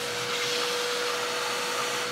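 Vacuum cleaner running steadily, its hose sucking up dirt and debris from the top of a car engine: an even rush of air with a steady whine.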